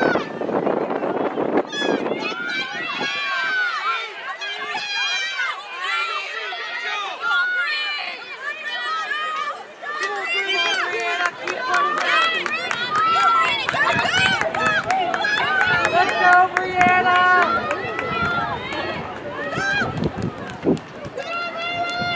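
Many spectators yelling and cheering runners on, lots of high voices overlapping at once, growing louder and busier in the second half.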